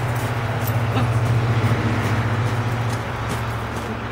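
A motor vehicle passing on a nearby road: a low engine and tyre drone that swells about a second in and fades toward the end. Faint crunches of footsteps on gravel sound over it.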